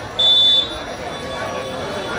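Referee's whistle, one short steady blast of about half a second just after the start, over crowd chatter.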